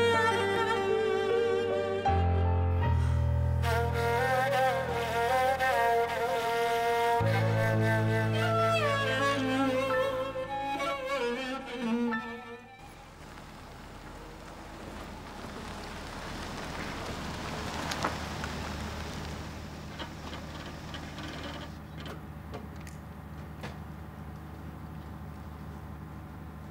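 Score music on bowed strings, cello and violin over a deep bass, that cuts off suddenly about halfway through. Then a car drives by: its engine and tyre noise swell to a peak and fade, over a steady low hum.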